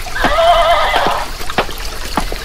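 A horse whinnying once: a single wavering, high call lasting about a second.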